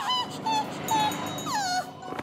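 Cartoon character's high-pitched whimpering squeaks: a held note, two short squeaks, then a falling whine about one and a half seconds in.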